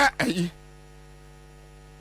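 Steady electrical mains hum in the recording, made up of several even, unchanging tones. A man's voice is heard briefly in the first half second.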